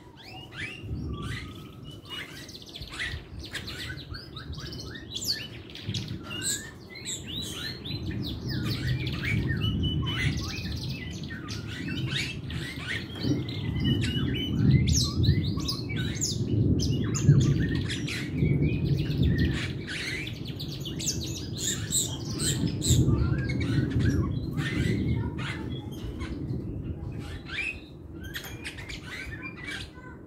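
Caged jalak rio-rio myna singing non-stop, a rapid jumble of short chirps, whistles and harsh notes. A loud low rumble runs underneath, swelling in the middle.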